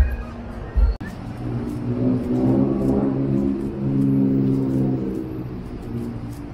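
Bar music with a heavy bass beat, cut off abruptly about a second in. Then a motor vehicle engine running on the street, swelling as it passes in the middle and fading toward the end.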